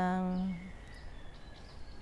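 A woman's voice holding the final syllable of a Thai Buddhist chant on one steady note, cutting off about half a second in. Then quiet open-air ambience with a faint, thin high tone.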